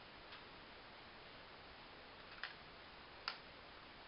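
Two light clicks of small plastic toy saucers being set down on a school desk, over a faint steady hiss.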